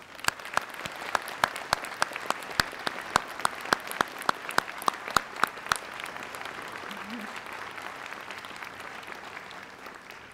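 A large crowd applauding, with one nearby pair of hands clapping loudly about four times a second over the dense applause until about six seconds in; the applause then carries on more evenly and eases slightly near the end.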